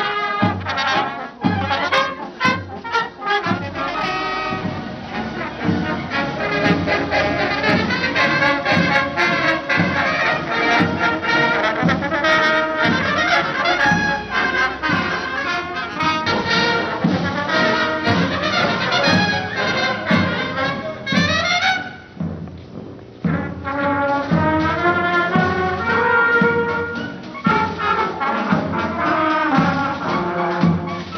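Marching brass band playing a march: trumpets and trombones over sousaphones and a steady drum beat, on an old VHS recording. About two thirds through, a rising run closes a phrase, there is a brief pause of about a second, and the band starts up again.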